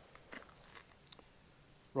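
Quiet outdoor background with a few faint short clicks and rustles, one about a third of a second in and another just after a second.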